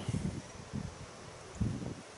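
Outdoor wind rustling tree leaves and brushing the microphone, with a brief low sound about a second and a half in.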